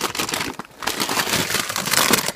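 Plastic crisps bag crinkling as it is picked up and handled, growing louder about halfway through.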